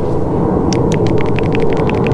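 Small quick metallic clicks, several a second from a little under a second in, as the plunger of a bled hydraulic lifter is pushed down and let back up smoothly, over a steady low rumble.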